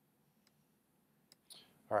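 Near silence with a few faint, sharp clicks, then a short noise and a man's voice starting to speak right at the end.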